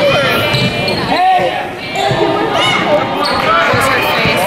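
Basketball game in a gym: a ball bouncing on the hardwood court amid players' and spectators' shouting voices, with the echo of a large hall.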